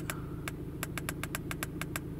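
Quick, irregular clicks of a handheld scan tool's direction-pad buttons being pressed, about ten a second, over the steady low hum of the car's engine idling.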